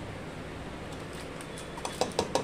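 Steady low room hum, with a few faint clicks near the end as a steel spoon scrapes butter off its wrapper.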